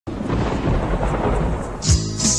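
A loud, steady, low rumbling noise, then music with a drum hit starts near the end.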